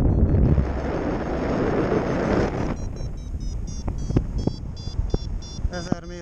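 Airflow rushing over the microphone in flight, loudest for the first two and a half seconds, then easing. Under it, a paragliding variometer beeps in a quick regular run of short high tones, about four or five a second.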